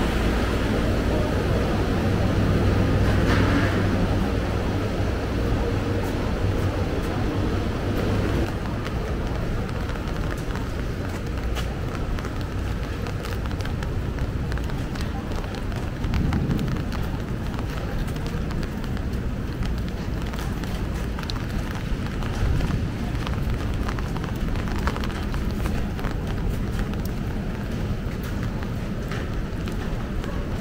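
City street ambience heard while walking: a steady low hum of distant traffic, with faint scattered steps and voices.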